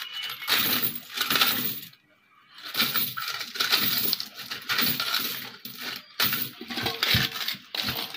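Coins clinking and jingling against each other as handfuls are raked out of an opened coin bank onto a pile, with a brief pause about two seconds in.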